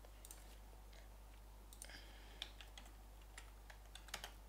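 A few faint, scattered computer keyboard key presses and mouse clicks over a low steady hum, as a node is searched for and picked in the software.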